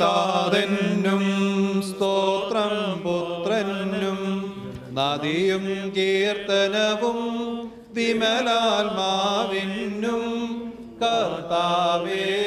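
Voices singing a slow, melodic Christian funeral liturgy chant in long held phrases, with brief breaths between phrases about five, eight and eleven seconds in.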